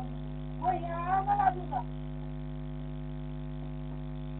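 Steady electrical mains hum in a security camera's audio, several even tones at once, with a person's voice calling out briefly about a second in.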